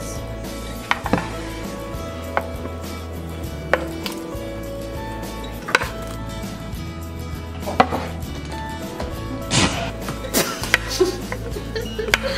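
A plastic slotted spoon knocking and scraping on a wooden cutting board propped on a stainless stockpot's rim as cut sausage is pushed into the pot. The knocks are sharp and come every second or two, more often near the end, over background music.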